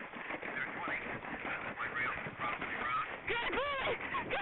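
Horse galloping through a water jump on a cross-country course: splashing and hoofbeats under a steady rush of wind on a helmet-mounted camera. Near the end comes a run of short calls that each rise and fall in pitch.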